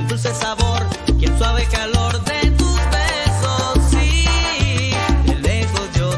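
Salsa erótica music playing in a DJ mix, with no singing. A steady bass line moves in even note blocks under sharp percussion strikes and pitched instrument lines.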